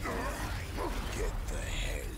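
Sound effects from an animated superhero fight: several short tones that bend up and down, over a steady low rumble.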